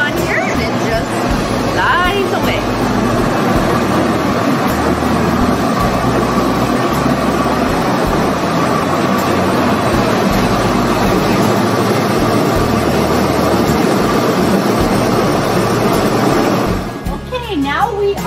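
Yarn spinning frame running in a fiber mill: a loud, steady machine noise from many spindles turning, with a faint steady hum through it, cutting off about a second before the end.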